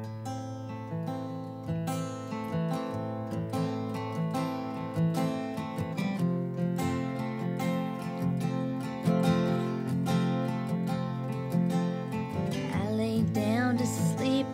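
Two acoustic guitars playing the slow, picked instrumental intro of a country ballad. A woman's voice starts singing near the end.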